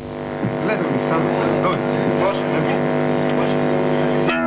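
Amplified electric guitar and bass holding a sustained, distorted drone with no drums. It is the lead-in to the next post-punk song, just before the picked guitar riff starts.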